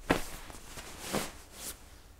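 Hyke & Byke Eolus 15 down sleeping bag's shell fabric rustling as it is handled, in a few soft swishes.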